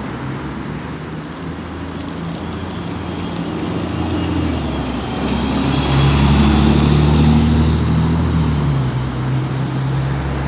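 MAN articulated city bus driving past close by: its engine hum grows louder, is loudest as the bus passes about six to seven seconds in, then eases off as it moves away.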